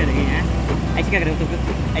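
Motorcycle engine running steadily with a low hum as the bike pulls up a steep road, with a man's voice speaking over it.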